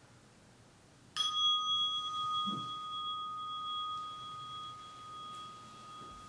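A meditation bell struck once about a second in, ringing on with a slowly fading clear tone that marks the end of the sitting period.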